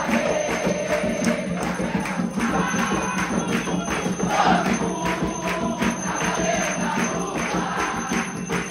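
An Umbanda congregation sings a ponto together, accompanied by hand-clapping.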